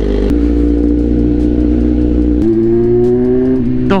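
Motorcycle engine running with a steady note. A little past halfway the sound changes and the engine note climbs slowly as the bike accelerates.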